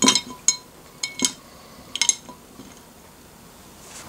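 RGB LED pixel modules dropped into a drinking glass of water, clinking against the glass like ice cubes: four ringing clinks within the first two seconds.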